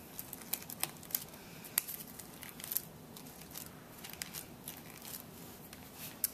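A paper flower rustling and crackling under the fingers as stray strings of hot glue are picked off it: scattered small crackles and clicks, busiest in the first three seconds.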